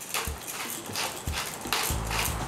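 Hand pepper mill twisted over a blender jar, grinding peppercorns with a run of irregular short crunching clicks.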